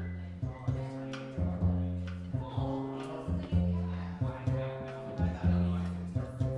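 Jazz combo playing the opening vamp: a repeating riff of struck low notes with chords over it, each group dying away before the next.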